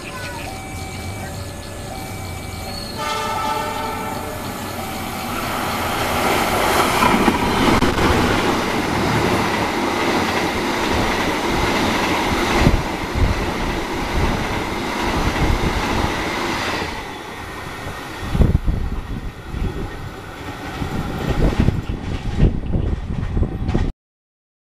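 A passing train's horn sounds about three seconds in. The train then runs close by on the next track, with a loud, steady rush of wheels and cars. Near the end the rush gives way to separate knocks of wheels over the rail joints, following a repeating two-pitch signal tone at the very start.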